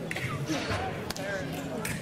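Indistinct voices echoing in a large sports hall, with two sharp knocks, one about a second in and one near the end.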